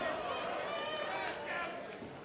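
Men's voices calling out over the background noise of a hall, the words not clear enough to make out.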